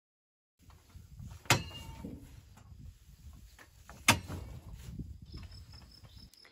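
Silence at first, then pitchfork work clearing straw and goat manure from a shed: rustling and scraping with two sharp knocks, about 1.5 s and 4 s in, the first ringing briefly. A steady high insect chirr comes in near the end.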